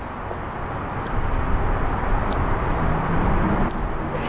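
Outdoor background noise with a low rumble, like distant traffic, growing louder about a second in, with a few faint clicks.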